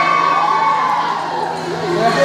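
Many children's voices shouting and chattering at once, with a steady low hum underneath.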